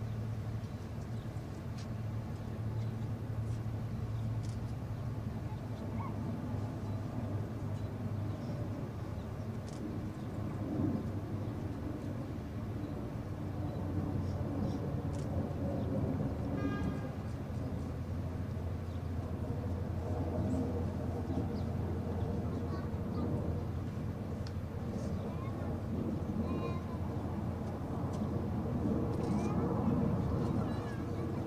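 Open-air ambience of a large crowd standing in a moment of silence: a steady low hum with faint rustles and murmurs, and a short run of ticks about halfway through.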